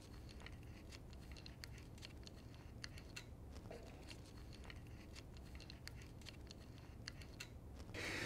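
Faint, irregular clicking of a single-handed pistol-grip grease gun as its trigger is pulled over and over, pushing grease out through the hose coupling.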